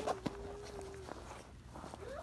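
Soft handling noises of a fabric thermal bag, with a small click, as a metal spreader is slipped into an inside pocket. A woman's voice holds one hummed note for about the first second.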